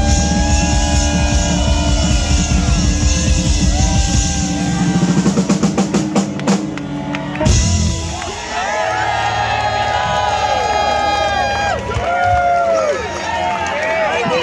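Live rock band with drums, organ and electric guitars playing at full volume, building through a rapid run of drum hits to a final loud crash about seven and a half seconds in. After it, held notes ring out with voices over them.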